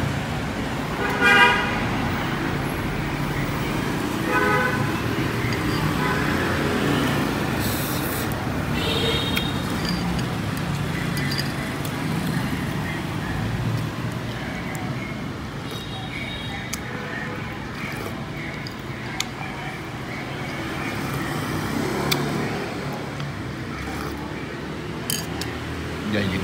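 Steady street traffic noise with short vehicle horn toots, the clearest about a second in.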